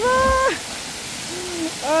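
A person belly-flopping into a pool: a splash right at the start under a short high-pitched shout. Another voice calls out near the end, over the steady rush of a waterfall.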